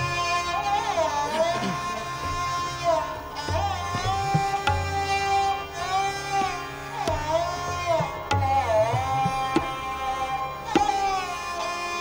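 Hindustani classical vocal: a male voice sings a gliding, ornamented melodic line over a steady tanpura drone and harmonium, with tabla strokes underneath.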